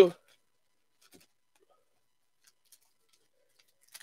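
Near silence, broken only by two faint ticks about a second apart.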